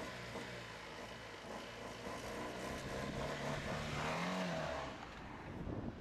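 Fiat 500 small car engine as the car moves off at low speed. The engine note rises briefly as it accelerates about four seconds in, then settles.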